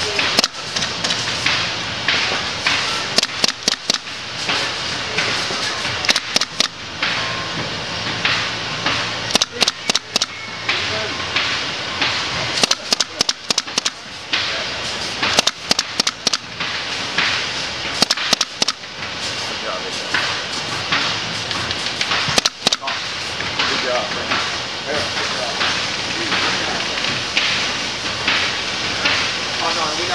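Pneumatic staple gun firing into a mattress edge in quick bursts of several sharp shots every few seconds, over a steady factory background noise.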